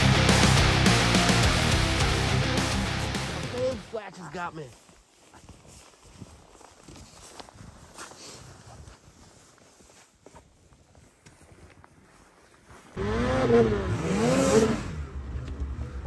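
Heavy rock background music fades out over the first few seconds. Then a quiet stretch, until a snowmobile engine suddenly revs loudly near the end, its pitch rising and falling twice as the sled churns through deep snow.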